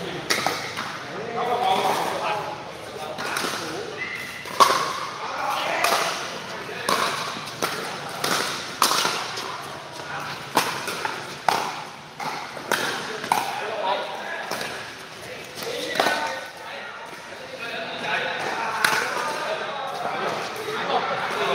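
Pickleball paddles hitting a hard plastic ball in a rally, with the ball bouncing on the court: sharp pops about once a second, irregularly spaced, under background voices.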